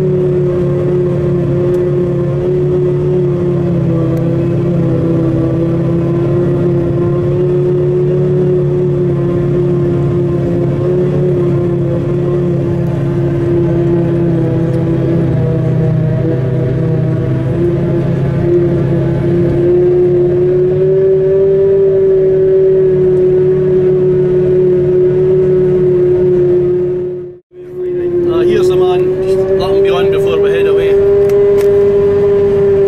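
Claas Jaguar 950 forage harvester running under load while chopping grass, heard from inside the cab: a loud, steady hum that wavers slightly in pitch over a low rumble. It cuts out sharply for a moment near the end, then resumes.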